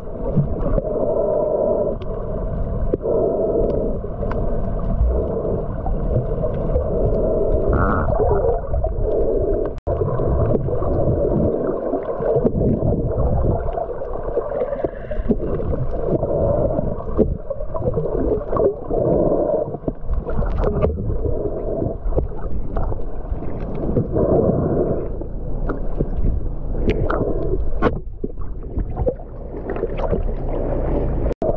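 Water and bubbles heard from underwater while swimmers snorkel and kick over a reef: a dull, muffled rushing with irregular gurgling swells.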